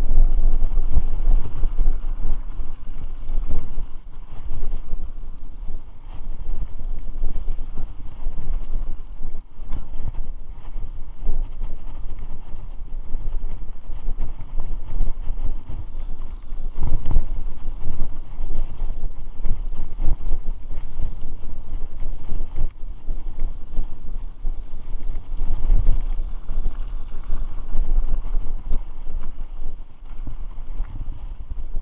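Wind buffeting an action camera's microphone as a mountain bike rides along a rough dirt singletrack. Knocks and rattles come through from the bike jolting over the bumpy trail.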